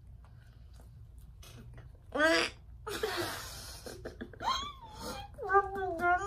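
Muffled, wordless voices from mouths stuffed with marshmallows. About two seconds in there is a short cry that rises in pitch, then a breathy puff of air, then wavering, moan-like laughter toward the end.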